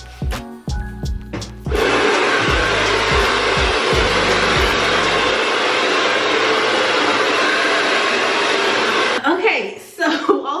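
Hand-held blow dryer with a comb nozzle attached, switched on about two seconds in and running steadily, then cut off about a second before the end. Background music plays at the start and carries on faintly under the dryer for a few seconds.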